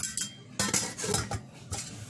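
Metal kitchenware clinking and knocking against a stainless steel bowl, several sharp clinks over about two seconds.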